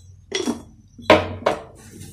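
A few short clinks and knocks of kitchen utensils against a bowl or container, spread across two seconds.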